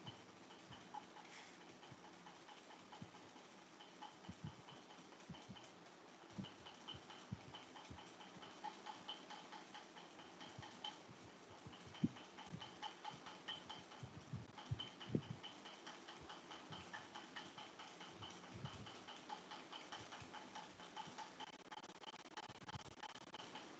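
Near silence: faint room tone with scattered soft clicks and light thumps, and a faint rapid high chirping in the background.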